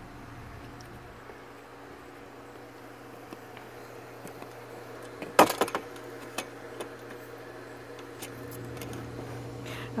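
A steady low hum runs throughout. A single sharp knock sounds about five and a half seconds in, followed by a few light clicks.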